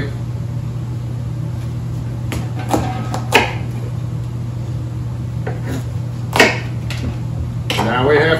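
A large kitchen knife working through a tough spaghetti squash on a wooden cutting board: a few short, separate crunches and knocks, the loudest about six seconds in, as the squash splits in two. A steady low hum runs underneath.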